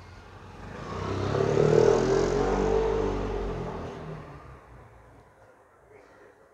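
A road vehicle passing by: it swells up to its loudest about two seconds in, then fades away over the next few seconds, its engine note dropping slightly in pitch as it goes.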